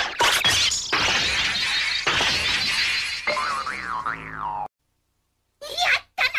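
Animated-film sound effects over music: a few sharp crash-like knocks, a dense hissing rush, then a wobbling cartoon 'boing'-style glide that rises and falls and cuts off abruptly, leaving a second of silence. A voice starts right at the end.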